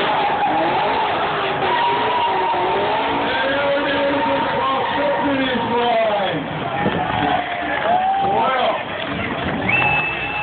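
Ute drifting: tyres skidding and engine revving with wavering, gliding pitch, its tyres smoking.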